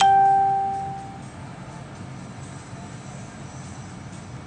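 A single loud bell-like ding right at the start that fades out over about a second, over faint background music.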